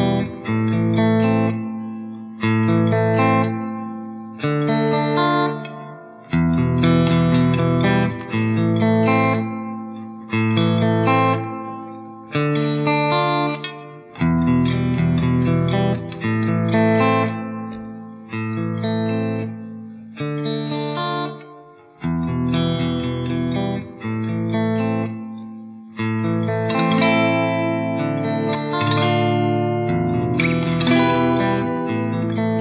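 Fender Stratocaster played through the clean green channel of an EVH 5150 III 50-watt valve amp into a 2x12 cabinet with Vintage 30 speakers, with Electro-Harmonix Oceans 11 reverb on it. Chords are struck about every two seconds, each ringing out and fading before the next.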